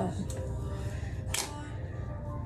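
Steady low ventilation hum in a small bathroom, with one sharp click about a second and a half in.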